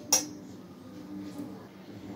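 A single light metallic clink just after the start, a steel spoon against the stainless steel plate covering the bowl, followed by faint room noise.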